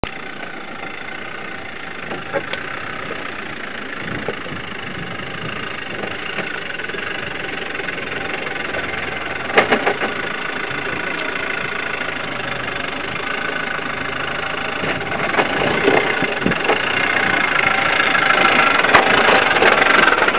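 Land Rover Defender's engine running at low revs as the truck crawls slowly down a rocky step, growing steadily louder as it comes closer, with a sharp knock about halfway through and a few more later.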